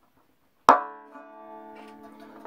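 A single string of an Irish tenor banjo plucked once, about two-thirds of a second in, and left ringing with a slow fade. The string is a freshly fitted one being plucked as it is brought up to tension.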